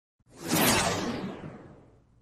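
A whoosh sound effect for an intro logo: it swells quickly a quarter second in, then fades away over about a second and a half, growing duller as it fades.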